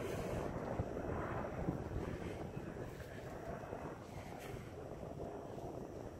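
Steady low outdoor rumble with wind on the microphone, fading slightly, with a faint click or two.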